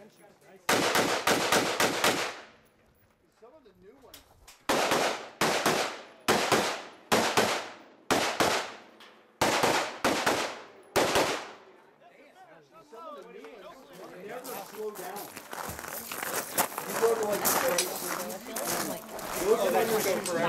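Rifle shots at a target course. First comes a quick string of about five shots, then after a pause of about two seconds a longer string of about ten shots, roughly two a second, each with a short echo. The shooting stops about eleven seconds in.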